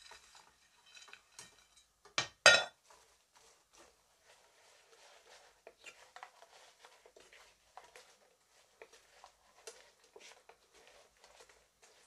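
Crispy fried beef pieces pushed from a plate into a frying pan with a wooden spoon, then stirred and tossed in the sauce. Two sharp knocks against the pan about two and a half seconds in, then light scraping and clattering of the spoon and beef in the pan.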